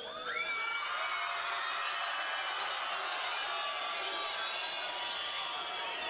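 Large rally crowd cheering and shouting at a steady, full volume, answering a call to make a sound loud enough to be heard from a mountaintop.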